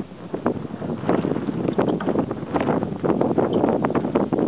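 Wind rumbling and buffeting on the microphone, with the dull, irregular hoofbeats of a horse moving across a sand arena.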